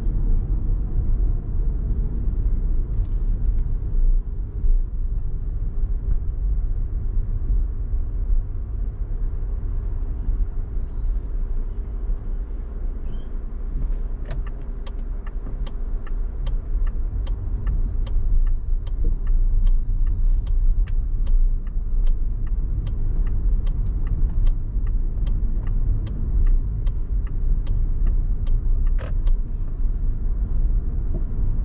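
Steady low rumble of a car's road and tyre noise while driving. From about halfway through, evenly spaced ticks come about twice a second for some fifteen seconds, the rhythm of a turn-signal indicator, with one sharper click near the end.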